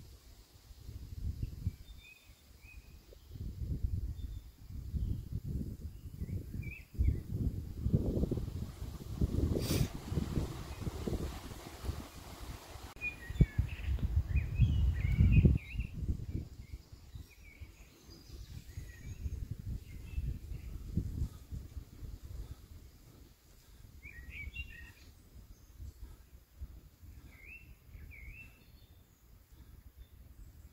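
Gusts of wind rumbling on the microphone, strongest in the middle of the stretch, with small birds chirping now and then.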